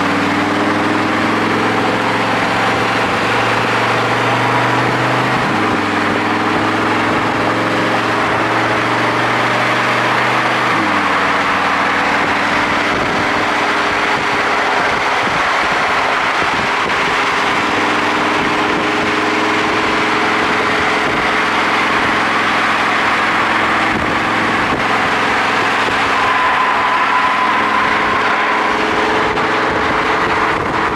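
Car engines running at road speed as two cars drive side by side, under steady road and wind noise. The engine note changes in steps about five and eleven seconds in.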